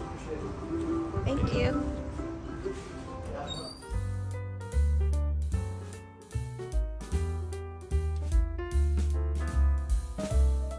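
Indistinct voices over a noisy background, then, about four seconds in, instrumental background music starts abruptly: a bass line under keyboard chords.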